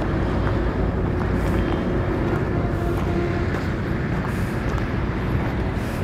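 Steady low outdoor rumble with a faint constant hum, from distant road traffic and wind on the microphone.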